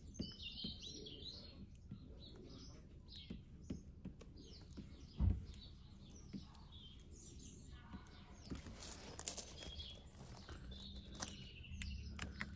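Small birds chirping on and off over a low outdoor rumble, with faint scattered clicks and one thump about five seconds in.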